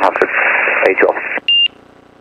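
Another aircraft reading back a tower clearance over the aviation radio, heard through the headset audio with a thin, narrow sound. The voice stops about one and a half seconds in and is followed by a single short, high electronic beep, the first of a repeating cockpit alert tone.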